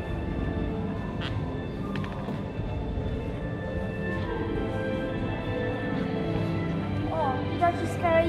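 Background music with long held notes playing in an exhibition hall, over people talking; a voice comes in near the end.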